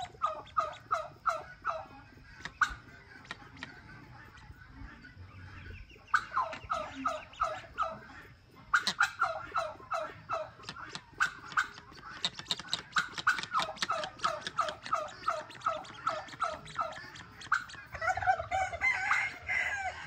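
Crested guineafowl calling in several long runs of short, downward-sliding notes, about four or five a second, with pauses between the runs.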